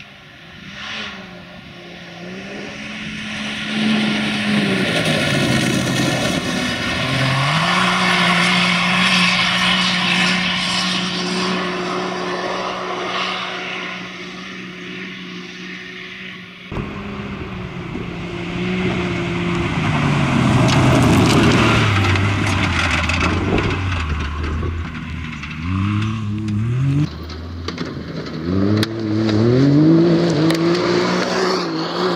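Can-Am Maverick X3 side-by-side at racing speed on a dirt rally stage, its turbocharged three-cylinder engine holding a steady pitch as it approaches and growing louder. After a sudden cut it comes past again; the engine note drops, then revs up again and again as the car slides through a corner close by.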